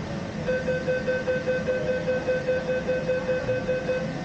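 Electronic warning beeper sounding a rapid, steady run of identical beeps, about five a second, starting about half a second in and running on for some three and a half seconds, typical of a tram's departure warning before the doors close and it sets off.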